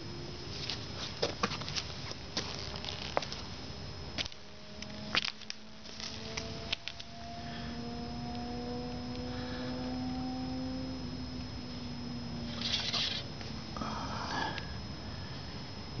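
Faint light splashing and small clicks of a hand stirring water in a shallow aluminium cookie tin to break up floating pepper. The clicks are scattered through the first half, and there are two short rustling swishes near the end.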